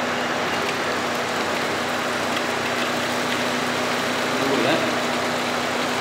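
Steady hum of a running refrigeration unit: a constant low tone over an even whirring noise, unchanging in level.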